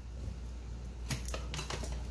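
Light clicks and taps from kitchen things being handled on a counter, a plastic appliance and a glass bowl on its plate, starting a little after a second in.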